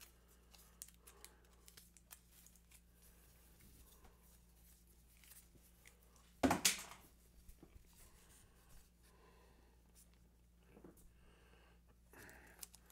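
Faint rustling and small clicks of a small hand-held flag on a stick being unrolled and handled, with one louder, brief swishing burst about six and a half seconds in. A steady low hum runs underneath.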